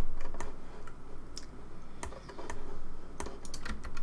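Computer keyboard keys and mouse buttons clicking in an irregular scatter of short clicks.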